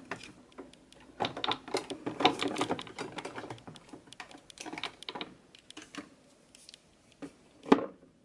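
Plastic and glass cosmetic bottles and tubes clicking and clattering against each other and a clear acrylic makeup drawer as they are moved and slotted into place. The taps come quickly and irregularly, with one louder knock near the end.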